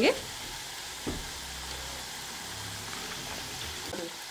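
Chakli deep-frying in hot oil in a pan: a steady sizzle, the sign that they are still cooking and not yet crunchy. There is a soft knock about a second in.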